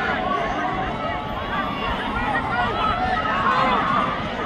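Crowd noise at a lacrosse game: a steady mix of scattered shouts and chatter from players, sidelines and spectators, with no single voice standing out.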